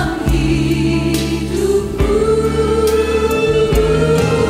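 Christian worship song with a choir singing long held notes over accompaniment whose bass note changes about every two seconds.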